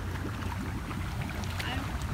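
Hot tub jets running: water churning and bubbling over a steady low rumble.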